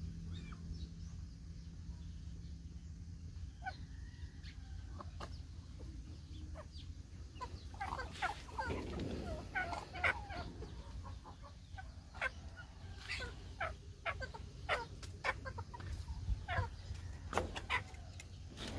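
A mixed flock of heritage chickens clucking, short calls that grow more frequent about halfway through, over a steady low hum.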